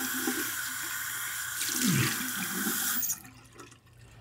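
Bathroom sink tap running steadily into the basin while water is splashed onto a face. The flow cuts off abruptly about three seconds in as the tap is shut.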